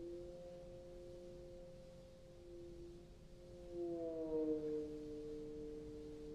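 Bass trombone played with a straight mute: two long held tones sound together, slide down together about four seconds in, then hold at the lower pitch.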